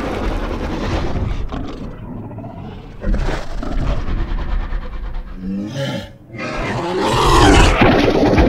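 Film dinosaur calls and roars: a sudden call about three seconds in, a deeper call falling in pitch a little before six seconds, then the loudest of all, a long roar building toward the end from a large theropod, the Giganotosaurus.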